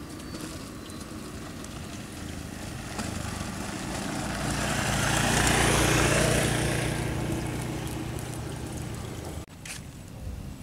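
A small engine passes by. Its steady low hum swells to its loudest about halfway through, then fades, and breaks off abruptly near the end.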